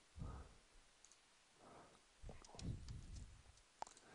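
Faint computer mouse clicks while vertices are selected one by one, with a sharp click near the end, among a few soft low thuds.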